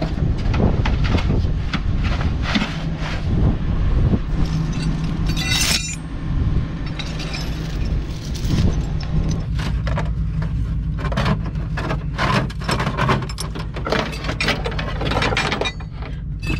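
Steel chain and tools clinking and knocking against a Jeep Wrangler's bare front hub and brake rotor as the hub is chained down onto a steel car hood, with one ringing metal clang about five and a half seconds in. A steady low rumble runs underneath.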